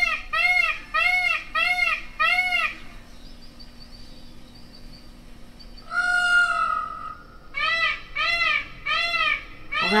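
Peacock calling: a rapid series of loud, arching cries at about two a second that breaks off about three seconds in, then one longer cry about six seconds in and another rapid series near the end.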